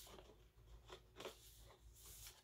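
Near silence with a few faint, brief rustles of a paper sheet being handled and unfolded.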